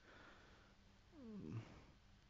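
Near silence with faint hiss, broken about a second in by one short, faint vocal sound that falls in pitch.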